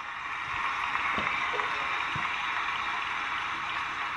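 An audience applauding: a dense, steady wash of many hands clapping that eases off slightly near the end.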